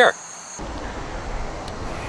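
An insect's steady high trill stops abruptly about half a second in. A steady, low outdoor background rumble takes its place.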